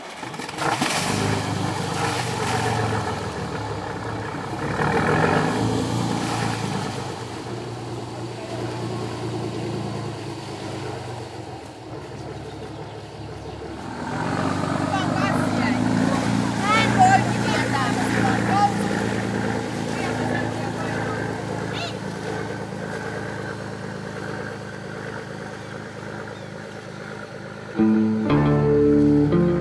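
A boat engine running steadily, with people's voices in the background; the engine grows louder about halfway through.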